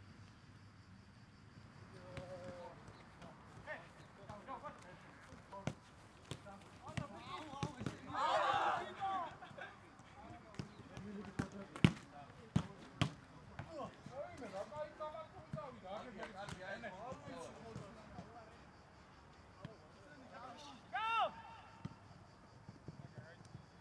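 Footballers calling out to each other on a training pitch, with the sharp thud of a ball being kicked now and then. There is a loud shout about eight seconds in and another call near the end.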